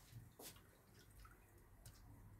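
Near silence, with faint liquid sloshing from a small silicone whisk stirring a milk-based flan mixture in a ceramic bowl. There are two soft ticks, one about half a second in and one near the end.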